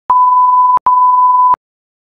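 Test-tone sound effect of the kind played with TV colour bars: two long, steady, high-pitched beeps of about three-quarters of a second each, with a brief gap between them. Each beep starts and stops abruptly with a click.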